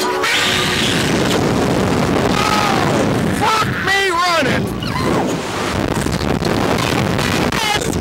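Slingshot reverse-bungee ride launching: a sudden onset of loud wind rushing over the on-ride microphone as the capsule is fired upward. The riders scream several times around the middle and again near the end.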